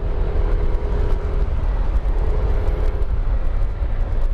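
Motorcycle being ridden at low street speed: a steady low rumble of engine and road noise, with a faint whine above it that fades in and out.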